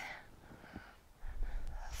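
Faint breathing of a woman lifting a kettlebell through a stiff-leg deadlift rep, with a low rumble in the second half.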